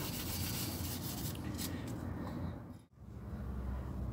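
Green dish-scouring pad scrubbing a chrome-plated BMX handlebar with soap, rubbing off the last specks of chemically stripped paint. The scrubbing fades and cuts off abruptly about three seconds in, leaving a faint steady background.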